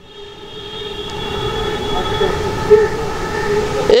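Steady droning vehicle or machine noise with several held tones over a low rumble. It builds up over the first couple of seconds and then holds.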